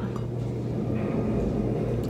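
A steady low hum of room noise, with no speech.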